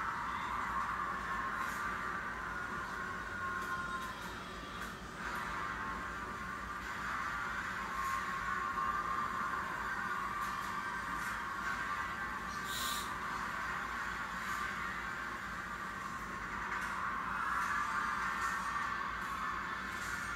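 Music of a televised dance performance playing back, steady and thin-sounding, squeezed into a narrow middle range.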